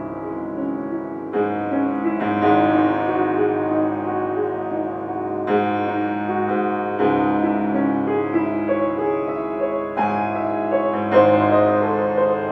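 Grand piano played solo in a classical piece, with sustained, pedalled chords and new chords struck every second or few.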